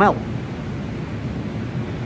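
Laminar flow hood running: a steady, even rush of air from its blower through the filter face.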